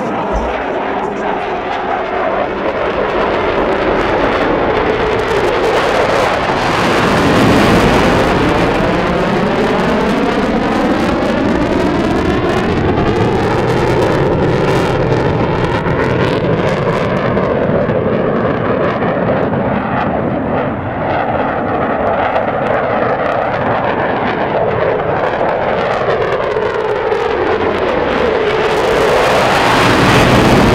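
Mitsubishi F-15J fighter flying display manoeuvres overhead: loud, continuous jet noise from its twin turbofan engines. Its tone sweeps up and down as the jet turns and passes, swelling about eight seconds in and again near the end.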